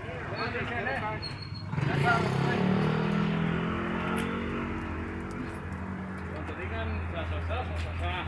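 A road vehicle's engine passing close by, coming in suddenly about two seconds in and falling in pitch as it goes away, followed by a low steady hum.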